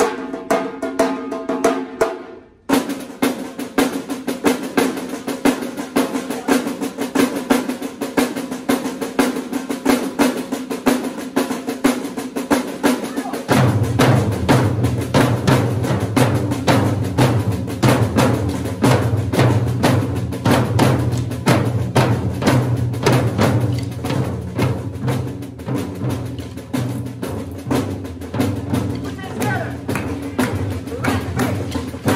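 School drum line of marching snare drums and bass drums playing a fast, steady rhythm with electronic keyboard accompaniment. A held keyboard chord breaks off briefly about two and a half seconds in, and a deep low part joins about halfway through.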